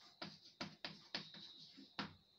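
Chalk on a blackboard while writing an equation: a quick run of short taps and scratches, about seven in two seconds, faint, over a steady high-pitched whine.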